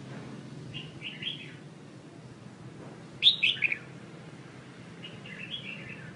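Caged songbird calling in short chirping phrases: a soft group about a second in, the loudest phrase a little past three seconds with notes stepping down in pitch, and another soft group near the end. A steady low hum runs underneath.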